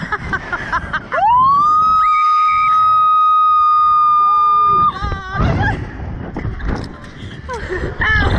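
Two young women screaming and laughing on a Slingshot reverse-bungee ride, with air rushing on the microphone. About a second in, one lets out a long, high scream that rises and is held steady for nearly four seconds, then cuts off abruptly into more shrieks and laughter.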